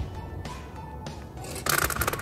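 Background music with a steady beat; near the end a brief burst of rapid rattling clicks, Mentos mints spilling out of their tube and scattering across a stone patio.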